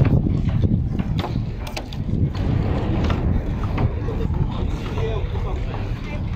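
Wind buffeting the microphone as a dense, uneven low rumble, with scattered voices of people nearby.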